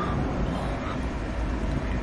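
Steady low rumble with a faint hiss, a constant background hum with no distinct events.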